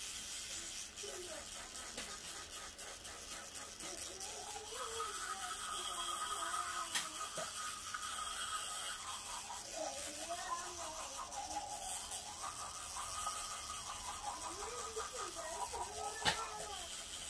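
Electric toothbrush buzzing steadily while brushing teeth, stopping briefly about ten seconds in. A soft melody runs underneath.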